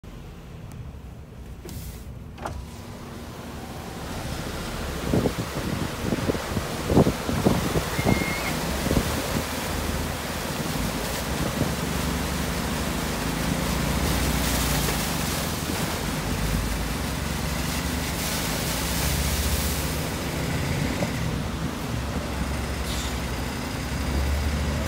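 Delivery truck's diesel engine running steadily as it drives through shallow seawater, heard from inside the cab, getting louder over the first few seconds. A run of knocks and thumps comes about five seconds in, and a rushing of water over the body and wheels runs under the engine.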